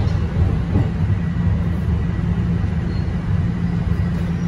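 Toronto subway train heard from inside the passenger car: a steady low rumble of the train running as it comes into a station, with a faint steady high whine over it.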